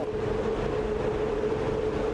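Hydroelectric powerhouse machinery running with a steady hum: a single unchanging tone over an even rushing noise.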